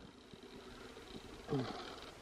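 Mostly quiet room tone with a few faint small ticks as a wire-mesh cage trap is handled and lifted, and one short spoken word about one and a half seconds in.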